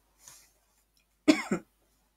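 A woman's short cough in two quick parts, about a second and a half in, after a faint breath.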